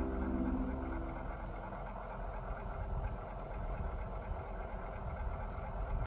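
The last held chord of background music dies away within the first second, leaving a steady low rumble of background noise.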